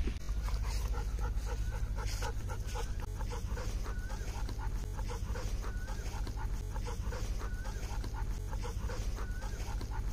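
Golden retriever panting quickly and evenly, about three to four breaths a second.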